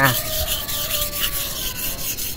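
A large knife's blade rubbed back and forth on a wet natural whetstone: a steady rasping scrape, repeated in quick, even strokes several times a second.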